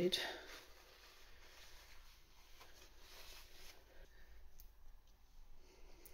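Faint rubbing and rustling of a paper kitchen towel wiping celery stalks dry, fading out about four seconds in, followed by a few faint ticks.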